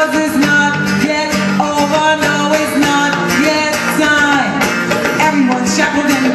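Live band music amplified through a PA, with electric guitar and singing, playing steadily.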